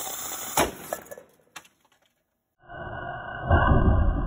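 Failed test of a homemade 2-liter bottle rocket engine. A sharp crack comes about half a second in, then after a brief silence a loud rushing burst, loudest around three and a half seconds in, as the test fails and the bottle is blown off the stand.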